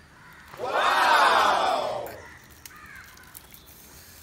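A loud, drawn-out shout of voices, rising then falling in pitch, lasting about a second and a half.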